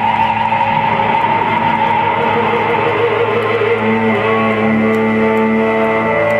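Electric guitar holding long sustained notes through effects, with echo; a new lower held note comes in about four seconds in.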